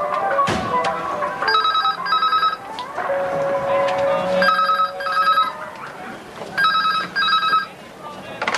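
Landline telephone ringing in the British double-ring pattern: three pairs of short rings, a couple of seconds apart.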